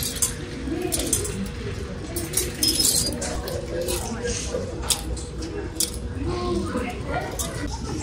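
Metal clothes hangers clicking and scraping along a store rack as garments are pushed aside one by one, with faint voices in the background.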